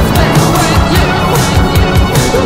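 Soundtrack music with a fast, steady beat.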